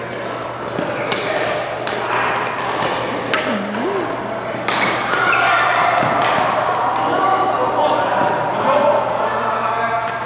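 Badminton rally: a string of sharp racket-on-shuttlecock hits, irregularly spaced, over background voices.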